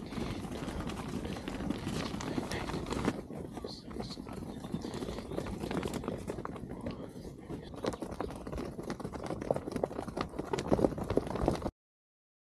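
Hooves of a flock of ewes trotting past on packed dirt: a dense, irregular patter of many small hoof-falls. It stops abruptly near the end.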